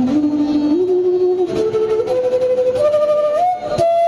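Bamboo flute playing a slow melody that climbs step by step through held notes, from low to higher, with a brief break near the end.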